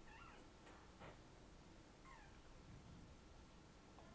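Near silence: faint room tone with a couple of faint clicks about a second in, and two faint short falling cries, one near the start and one about two seconds in.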